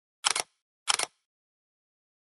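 Camera shutter clicks, twice, about two-thirds of a second apart, each a quick double click.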